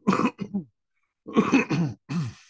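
A man clearing his throat and coughing in two bouts, one at the start and a second about a second and a half in.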